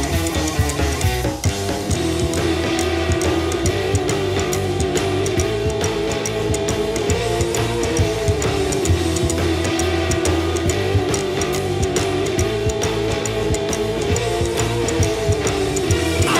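A punk rock song playing, with electric guitars and a drum kit, loud and continuous.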